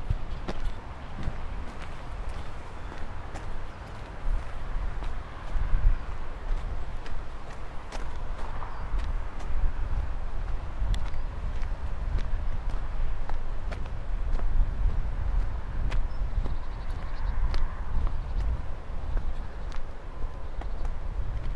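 Footsteps of a person walking through a city, with an uneven low rumble and many scattered sharp clicks over a faint background murmur.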